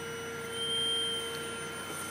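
Flyback-transformer high-voltage rig whining: a steady hum with a high whine that swells about half a second in and fades a second later. The rig is being driven at a frequency turned down to where it stops arcing but still gives a corona.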